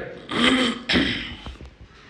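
A person clearing their throat, two short rough bursts within the first second or so.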